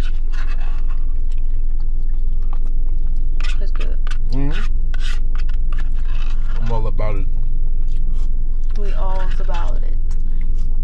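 A spoon scraping and tapping in a paper sundae cup, over a steady low hum inside the car. A few short hummed murmurs come from the eaters.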